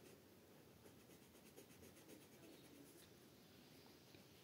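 Very faint scratching of an orange crayon rubbed back and forth on paper in quick, repeated colouring strokes, against near silence.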